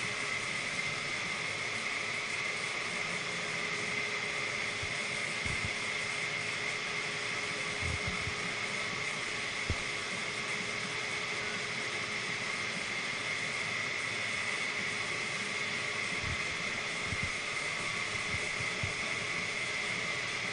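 Steady whirring hum and hiss of a ventilation fan running in a paint shop, with a constant high whine over it. A few faint soft thumps come and go.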